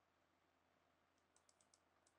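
Near silence: room tone, with a quick run of about five faint clicks a little past halfway.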